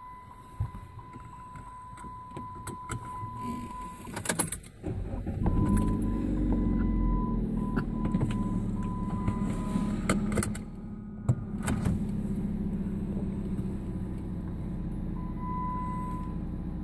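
A car engine starting about five seconds in after a few clicks, then running steadily at idle, heard from inside the car. A steady high beep sounds before it starts.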